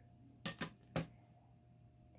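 Quiet room tone broken by a few faint short clicks, a quick pair about half a second in and one more about a second in.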